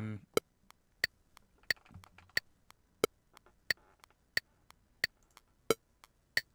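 Recording-software metronome click leaking from open-back headphones into the microphone: steady clicks, about three a second, every other one brighter.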